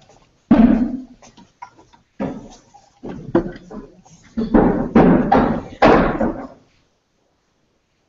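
A run of about five dull thumps and knocks, each dying away quickly, with muffled talk among them; it goes quiet a little before the end.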